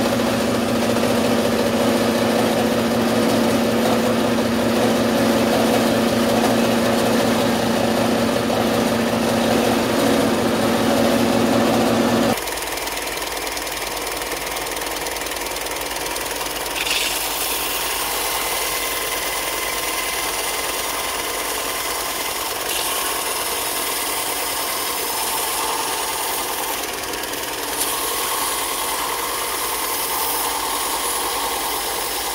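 A bandsaw running steadily with a low hum for about the first twelve seconds. It then gives way abruptly to a belt sander running, with a higher hiss that grows brighter as a small cedar ring is pressed against the moving belt.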